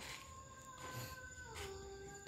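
A distant dog howling: long, drawn-out, faint notes that step down in pitch partway through.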